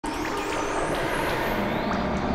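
The opening of an electronic ambient track demo: a dense, noisy, traffic-like sound bed that starts abruptly, with high arching sweeps drifting over it.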